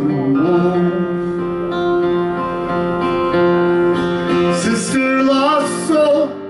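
Live music: a man singing a long held note over strummed acoustic guitar.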